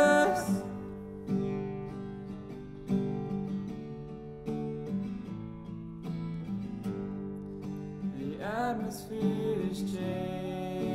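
Acoustic guitar playing chords alone in a slow worship song, after a held sung note fades just after the start. Near the end, singing comes back in over the guitar.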